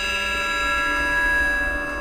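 Electronic synthesizer sound effect: a sustained chord of many steady high pitches that holds through, fading slightly near the end.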